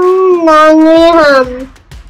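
A long held vocal call, steady in pitch for over a second, then sliding down and stopping about three-quarters of the way through.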